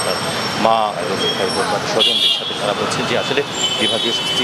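Street traffic behind a man's speaking voice, with a short vehicle horn toot about two seconds in.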